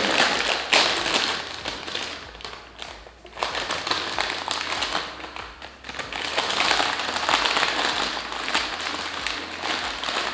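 Plastic potato chip bag crinkling and rustling as it is torn open and hands rummage inside it, in a dense run of crackles with two brief lulls.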